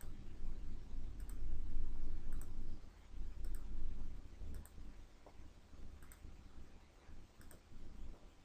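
Computer mouse clicking: single clicks about once a second, as wall segments are placed in a CAD program. A low rumble underneath is strongest in the first three seconds.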